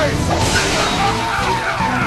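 Anime energy-slash sound effect, a loud rushing noise, over a man's yell and music with steady low notes.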